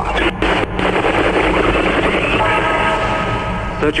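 Sound effect of power being switched on in an electronic horror track: a dense crackling noise surges, and a steady electric buzz comes in about halfway through, over a constant low bass drone.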